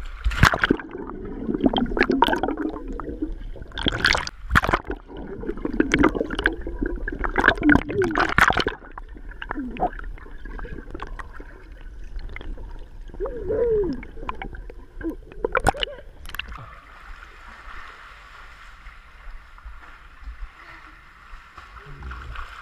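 Pool water splashing and bubbling as children jump in and swim, picked up by a GoPro in its waterproof housing as it goes under and above the water. Sharp splashes come thick in the first nine seconds; from about sixteen seconds in it settles into a steady hiss of water.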